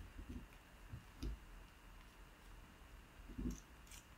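Faint handling sounds of a plastic fountain pen being taken apart: a few soft knocks and light clicks as the barrel comes off the section, the most distinct about a second in and near the end.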